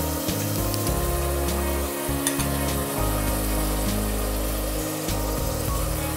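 Onion and tomato masala sizzling as it fries in an aluminium pressure cooker, with a slotted metal spoon stirring it and clicking against the pan now and then.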